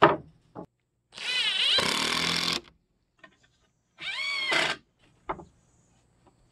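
Cordless drill driving screws into pallet boards: a run of about a second and a half that rises in pitch as it starts, then a shorter run about four seconds in. Wooden knocks from the boards being handled come before and between the runs.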